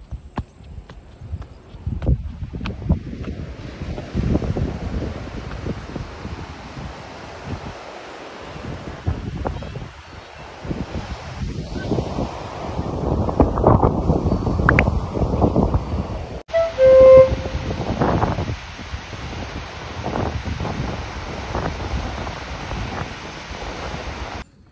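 Ocean surf breaking on a sandy beach, with gusts of wind buffeting the microphone. About two-thirds of the way through, the sound cuts abruptly, and a short pitched sound follows, the loudest moment.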